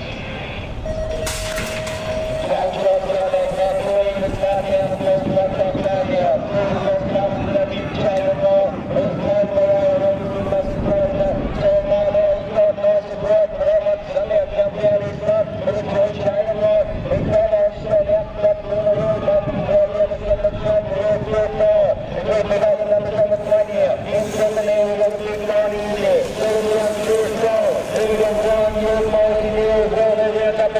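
A sharp clatter about a second in, then excited race commentary over a public-address loudspeaker, too distorted to make out, running on over the general noise of the track for the rest of the race.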